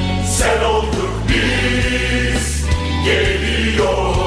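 Choir singing a Turkish football anthem in Turkish over a band with a steady bass and beat, with bright cymbal-like splashes about half a second in and again past two seconds.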